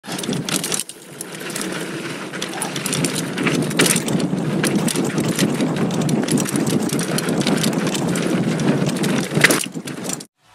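2019 Giant Stance 2 full-suspension mountain bike rolling fast down a dirt singletrack: a steady rush of tyre noise on the dirt, with frequent clicks and rattles from the bike.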